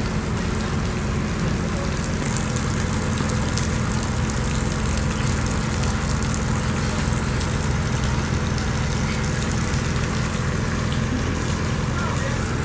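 Steady low mechanical hum from running machinery, with an even hiss over it.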